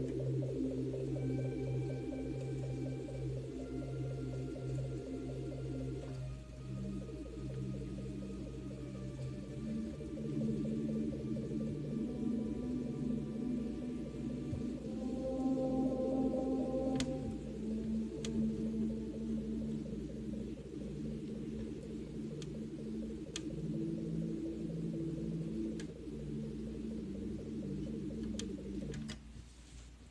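Electronic keyboard played four-hands: a slow, dramatic piece of long held notes, a low part and a higher part together, changing every second or two. The playing stops about a second before the end.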